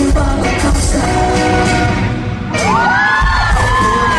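Live pop-rock band music: electric guitar, drums and male singing. About two and a half seconds in, the drum hits drop away briefly and several high, gliding voice lines rise over the band.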